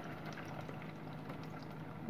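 Hot oil gently sizzling and bubbling around breadcrumb-coated chicken cutlets shallow-frying in a non-stick pan on low to medium flame, with scattered small pops.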